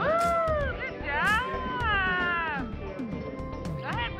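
High-pitched, meow-like vocal calls over background music: a short call that rises and falls, then a longer one that falls in pitch, and a brief rising call near the end.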